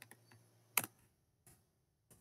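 A few faint, sharp computer clicks, as of a mouse or keys: the strongest a little before halfway through, a fainter one about three-quarters through, with small ticks between.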